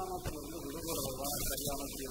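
A man's voice drawn out in one long tone through a microphone, its pitch wavering up and down for nearly two seconds before fading, over a steady background hiss.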